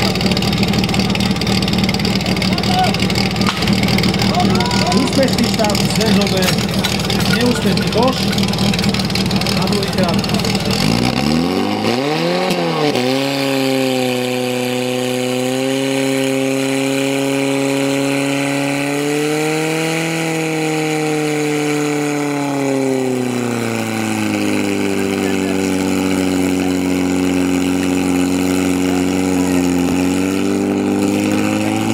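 A portable fire pump engine runs. About eleven seconds in it revs up sharply and holds at high revs, the pitch wavering slightly, while it drives water through the hoses. It settles a little lower a few seconds before the end. Voices shout over the early part.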